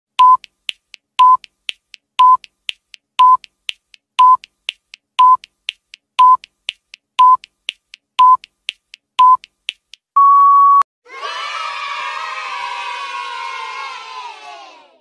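Countdown timer sound effect: a short electronic beep once a second, ten times, with a faint tick between the beeps, ending in a longer, slightly higher beep about ten seconds in as time runs out. A crowd cheering sound effect follows.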